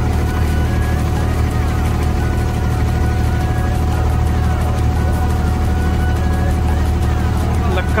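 A boat engine running steadily, heard from on board: an even low drone with a constant hum above it and no change in speed.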